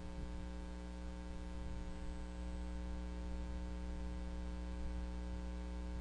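Steady electrical mains hum on the recording, with no other sound.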